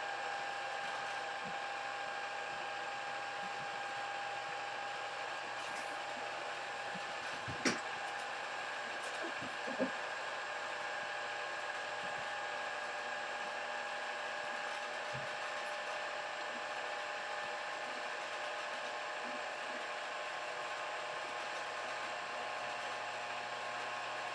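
Steady machine-like whir with a faint constant hum. Two soft clicks come about 8 and 10 seconds in.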